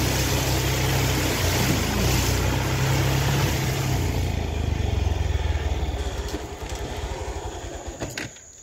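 Honda trail motorcycle's engine running as the bike rides through shallow floodwater, with water splashing under the wheels. Past the halfway point the engine note slows into separate beats and fades as the bike slows down.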